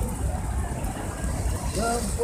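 Busy city street ambience: passers-by talking over a steady low rumble of traffic.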